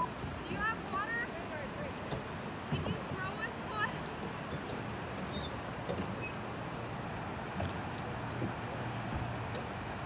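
Faint, distant voices from a rowboat out on a lake, twice in the first four seconds, over a steady wash of wind and water. Oars dip and splash with a few small clicks in the middle.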